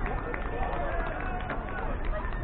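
Indistinct voices of players and spectators calling out across an open ball field over a steady low background rumble, with a couple of faint clicks.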